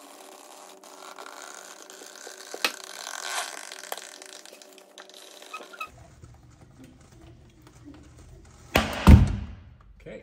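Scissor jack being cranked down against a tyre sidewall to break the bead, its mechanical noise sped up for the first six seconds. About nine seconds in comes a loud double thump, the sound of the tyre bead breaking free of the rim.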